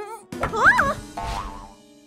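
Cartoon sound effects over background music: a low thud with a short strained cry as a tiny character struggles with a giant paintbrush, then a boing-like held tone that fades out.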